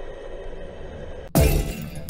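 Steady muffled background noise from an underwater camera, then about 1.3 seconds in a sudden loud crash that begins an edited-in intro.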